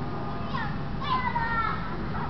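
Children's voices calling and chattering as they play, with high gliding shouts throughout, over a steady low background rumble.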